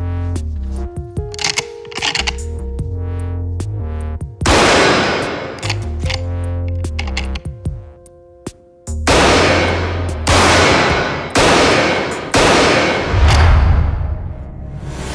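Pistol shots over dramatic background music: one shot about four and a half seconds in, then five shots roughly a second apart in the second half, each followed by a long ringing tail.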